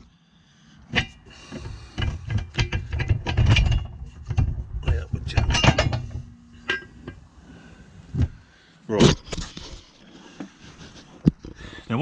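Close handling knocks, clicks and metal clinks, scattered and irregular, over a low rumble that stops about six and a half seconds in.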